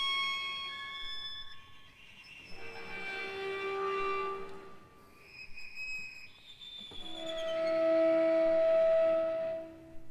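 Violin and cello playing soft, sparse sustained notes, many of them harmonics, with short pauses between. From about seven seconds in, a louder two-note sound is held for a few seconds and then fades just before the end.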